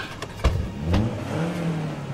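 A vehicle engine running and revving, its pitch rising about halfway through and then holding steady, with a sharp click shortly before.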